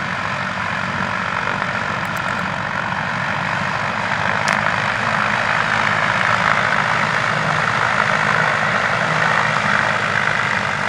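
Blimp's propeller engines running steadily close by as the airship is held low for landing, getting a little louder about halfway through.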